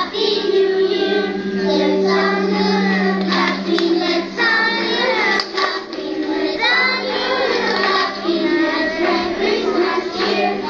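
A group of young children singing a song together on stage, into microphones, with long held notes.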